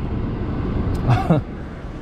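BMW 540i's 4.4-litre V8 idling steadily, heard from inside the cabin, with the vacuum leak from its failed oil separator now cured by a new separator. A short voice sound comes about a second in.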